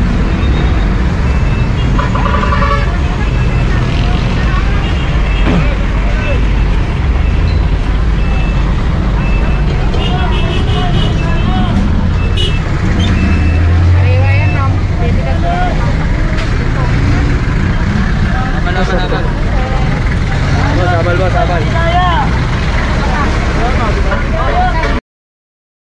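Busy city street traffic: road vehicles running with a steady low rumble. Passers-by talk nearby, more clearly in the second half.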